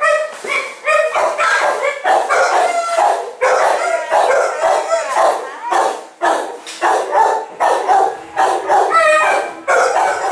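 Several dogs in a shelter kennel block barking continuously, the barks overlapping at about two to three a second.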